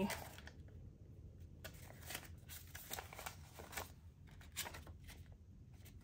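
Paper banknotes being counted by hand, each note flicked or slid off the stack: a string of soft, irregular paper flicks and rustles.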